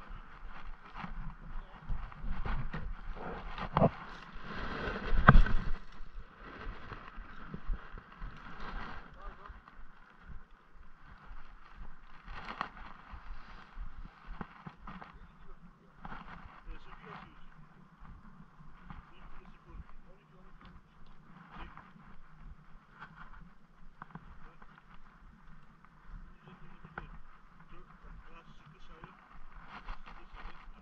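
Handling of a spinning rod and reel while fishing: scattered clicks and knocks over a steady background hiss, the loudest knocks about four to five seconds in.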